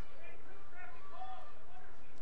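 Faint, distant voices calling out on and around the field, over steady open-air stadium ambience with a constant low hum.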